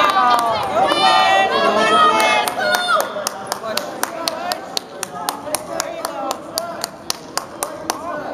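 Spectators' voices calling out for about the first three seconds, then sharp hand claps in a steady quick rhythm, about four a second, to the end.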